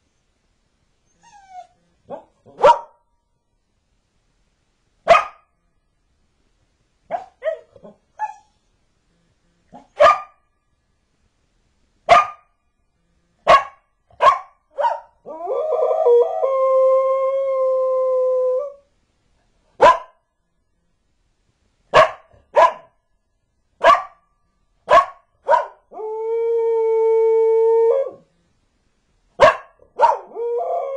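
Border collie barking in single sharp barks spaced a second or two apart, with a few quieter yips. About halfway through it breaks into a long steady howl lasting about three seconds, and gives a shorter howl near the end.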